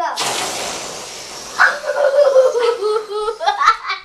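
Air rushing out of long balloons released as balloon rockets along strings: a loud hiss that starts suddenly and fades over about a second and a half. Children's excited voices and laughter follow.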